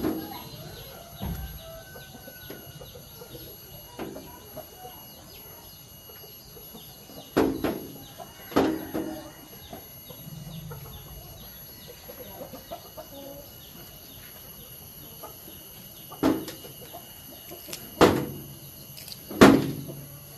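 Chickens clucking: a handful of short, loud clucks spread through the stretch, the largest in the second half.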